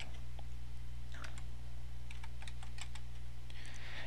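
Computer keyboard being typed on: a scattered run of light keystrokes spelling out a word, over a steady low electrical hum.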